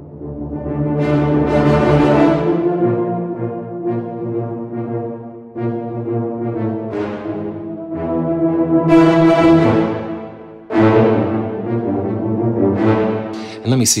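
Sampled brass ensemble of four French horns with tuba beneath (Spitfire Audio Abbey Road ONE Grand Brass) playing a series of short staccato chords. The chords are struck hard for a more aggressive attack, and each one rings out in the library's reverb.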